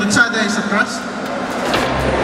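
A person's voice, a few syllables in the first second, with a few short clicks.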